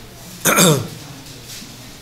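A man clearing his throat once: a short, sharp vocal sound about half a second in that drops steeply in pitch.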